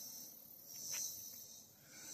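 Faint high-pitched insect buzzing that swells and fades about a second in.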